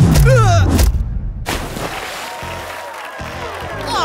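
Cartoon impact sound effect of a giant mallet hitting a toy figure: a sudden thump with a falling tone, and a short cry over it. Background music follows, with a sweeping transition sound near the end.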